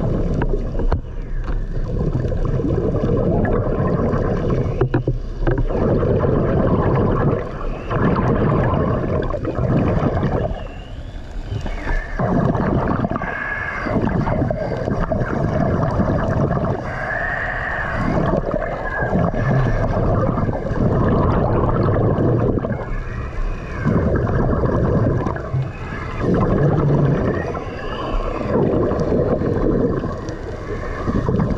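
A diver's breathing underwater, heard close up: rushes of air and bubbling exhalations that come and go every few seconds, with short pauses between breaths.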